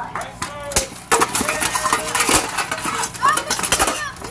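Armoured sword fight: steel blades striking a buckler and armour in a fast, irregular run of metallic clanks and clashes.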